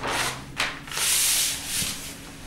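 Large sheets of paper sliding and rubbing over one another as a sheet is drawn across and off a stack: a few swishes, the longest and loudest about a second in.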